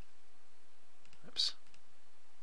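Faint computer mouse clicks over quiet room tone, with one brief breathy sound from the speaker about one and a half seconds in.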